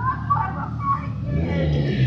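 A motor vehicle's engine accelerating, a low rumble that grows louder from about a second and a half in.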